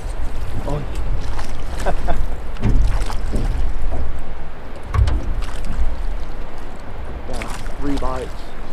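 Rowing boat under oars on a river: a constant low rumble of water and wind on the camera microphone, with scattered knocks and clicks from the boat and oars, and a few short bits of muffled voice.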